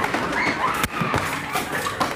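A few sharp thuds and knocks, the clearest a little under a second in, with muffled voices behind them.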